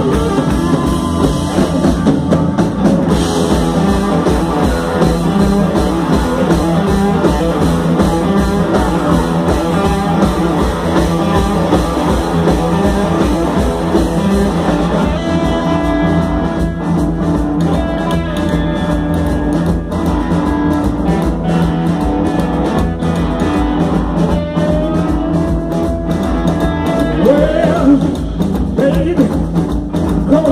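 Live soul-rock band playing loud and continuous: electric guitars, bass guitar and drum kit over a steady beat, with a long held guitar note near the end.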